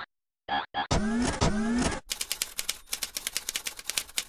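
Logo-animation sound effects: a few short pitched blips, then two rising sweeps about a second in, then a rapid run of typewriter-like clicks, about ten a second, for the last two seconds.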